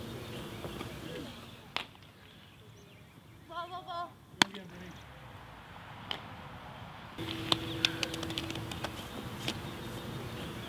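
Live field sound of softball outfield practice: scattered sharp knocks, the loudest about four and a half seconds in, with a short warbling call just before it and a quick run of clicks around eight seconds.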